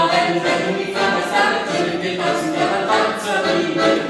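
Voices singing a folk melody, phrases changing about once a second, with accordion accompaniment.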